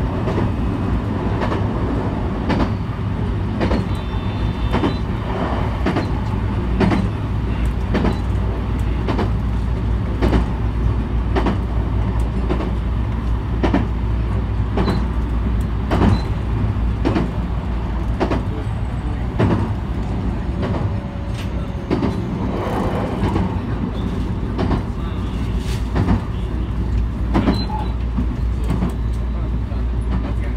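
JR West 223 series electric train running at speed, heard from behind the driver's cab window: a steady low rumble with frequent sharp clacks from the wheels on the track.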